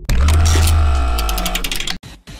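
Electronic logo sting: a sudden deep bass hit under a held electronic chord that slowly fades, with a quick run of glitchy clicks in the second half. It cuts off abruptly.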